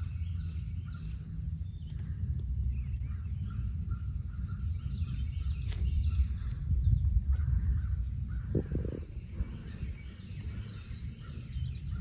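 Outdoor ambience: a steady low rumble on the microphone, with faint bird calls in the background and a brief click about six seconds in.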